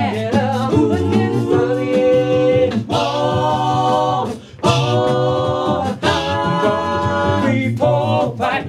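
Six-voice male a cappella group singing into microphones: held chords in close harmony over a steady bass line, breaking off briefly about four and a half seconds in before the chord comes back.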